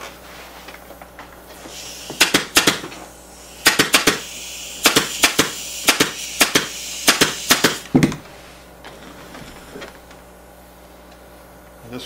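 Pneumatic upholstery staple gun firing a quick series of staples, about fifteen sharp shots, through fabric into a wooden chair frame, then stopping.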